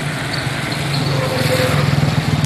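A small engine running steadily, a low even pulsing hum under a haze of outdoor noise.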